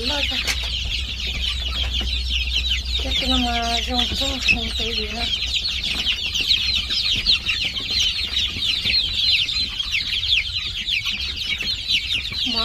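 A large brood of young chicks peeping without a break, many short high cheeps overlapping one another, over a low steady hum.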